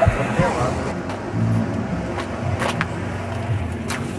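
Street noise with a motor vehicle running, a steady low rumble, and a few sharp knocks.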